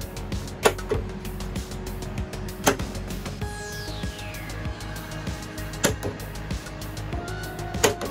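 Background music with a steady low bed, broken by four sharp clicks and one falling glide in pitch near the middle.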